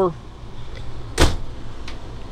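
Ducted roof air conditioner running steadily in the motorhome, with one sharp thump about a second in and a faint click near the end.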